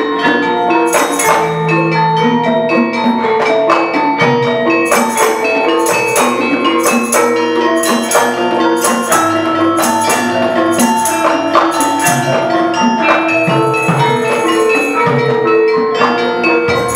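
Gamelan orchestra playing live: bronze metallophones struck in a quick, even beat, their notes ringing on over one another, with a barrel drum joining in at times.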